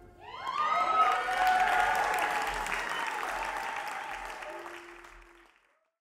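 Concert audience applauding, with a few whoops and cheering voices near the start, fading away to silence over about five seconds.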